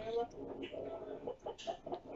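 A person laughing in short, choppy bursts, with a little speech at the start.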